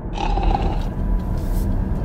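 A man asleep in a car's passenger seat snoring loudly, one long snore, over the steady low hum of the car.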